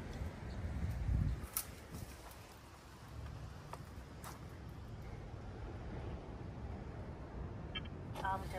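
Leaves and branches of a dense bush rustling, with a few sharp twig snaps, as a survey pole is pushed in among them; a low rumble is strongest in the first second or so.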